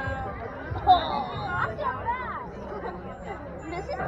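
Several people chattering indistinctly at a softball field, overlapping voices with no clear words, and a brief louder peak about a second in.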